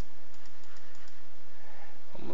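About seven quick, light clicks of computer keys or buttons over a steady background hiss, as the trading chart is zoomed in.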